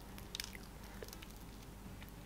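Faint, sticky squishes and a few small crackles as a fried pastry is squeezed and its red jam filling drips and smears onto a crispy fried chicken piece.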